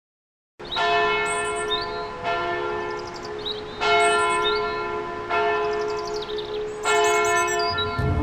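Church bell tolling, struck five times about a second and a half apart, each stroke ringing on and fading slowly into the next.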